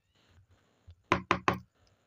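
Three quick knocks of a small plastic paint jar against a tabletop, about a fifth of a second apart, with a few faint handling clicks before them.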